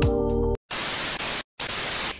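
Intro music cuts off about a quarter of the way in, followed by a television-static hiss sound effect in two stretches split by a brief silent gap.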